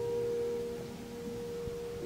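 A single high note of a cello-and-piano duo held and slowly fading away, sounding almost like a pure tone, in a hushed passage of classical chamber music.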